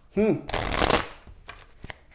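A tarot deck being riffle-shuffled by hand: a quick flutter of cards lasting about half a second, followed by a sharp tap near the end as the deck is pushed back together.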